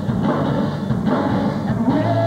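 Rock band playing live: strummed acoustic guitar, electric guitar and drums.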